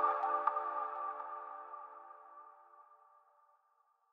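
The last chord of a channel intro jingle rings out after the beat stops and fades away to silence over about three seconds.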